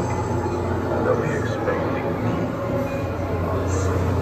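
Steady low rumble of the Haunted Mansion's Omnimover "Doom Buggy" ride vehicle moving along its track in the dark, with faint indistinct voices in the background.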